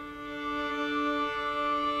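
A D drone from a play-along track: one steady sustained reference tone that swells slightly, used as the pitch to tune a fiddle's D note against.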